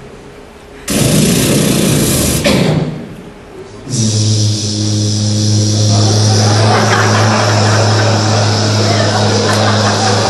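A loud burst of hissing noise about a second in, then from about four seconds a steady low electric buzz with a hiss over it.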